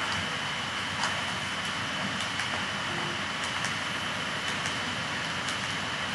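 Steady hiss of an open microphone with a faint high-pitched whine running through it, and light, irregular ticks of a stylus tapping on a writing tablet.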